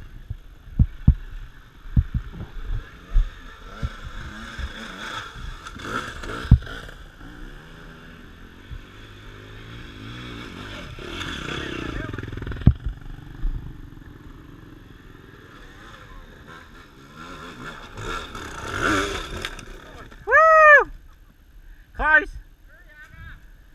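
Dirt-bike engine running and revving on a rough bush trail, with sharp knocks as the bike bumps over the ground. Near the end comes a loud shout.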